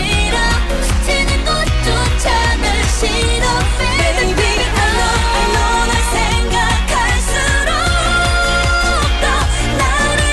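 K-pop song: women singing over a steady bass-heavy beat, with long held notes in the second half.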